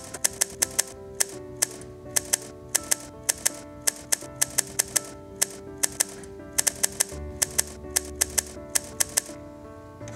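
Manual typewriter typing a line of text: the typebars strike the paper in a quick, irregular run of sharp clacks that stop near the end. Soft background music with sustained tones plays underneath.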